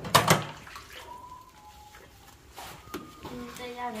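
Hands scrubbing food and splashing in a large basin of water, loudest in the first half-second.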